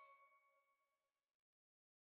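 Near silence: the faint, dying ring of a chime ending the channel's logo jingle, fading out about a second and a half in.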